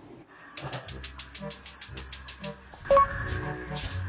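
Edited-in background music: a sneaky cue with quick ticking percussion, about seven ticks a second, over short plucked notes, then a sharp sound-effect hit with a brief ringing tone about three seconds in, the loudest moment.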